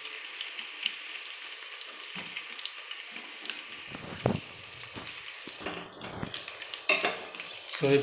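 Sliced onions and green chillies sizzling in hot oil in an aluminium pressure cooker, a steady hiss. A few sharp knocks come in the second half.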